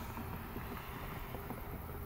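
Steady low rumble of wind on the microphone.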